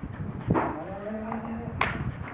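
A large dog giving a long, low drawn-out vocal groan lasting about a second, with a sharp click just before the end.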